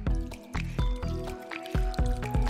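Background music with a steady beat, over a thin trickle of rice wine poured from a bottle into a glass bowl of monkfish liver.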